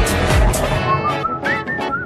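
Pop music: a track with deep, falling bass-drum beats ends about a second in and gives way to a whistled melody over plucked guitar.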